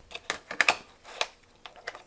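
Several sharp, separate clicks and taps of hard plastic as a pocket multimeter is set into its clear hinged plastic case and handled in it.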